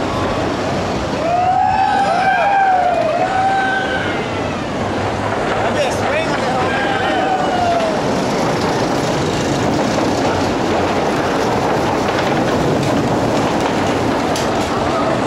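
Several voices whooping and yelling in overlapping rising-and-falling calls, in two bursts about a second in and again around six seconds in, from people on a bungee ride. A steady rushing noise runs underneath.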